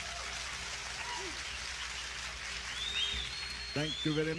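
A concert audience applauding after the end of a live rock performance, heard at a modest level, with a couple of high whistles in the middle. A voice from the recording starts just before the end.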